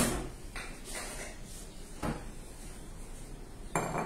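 Kitchen handling sounds: a few separate knocks and clinks of containers, utensils and cupboard doors as ingredients are fetched from the cupboards.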